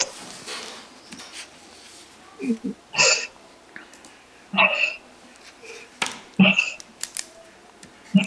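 A few brief, scattered voice sounds and clicks in a small room, with quiet room tone between them.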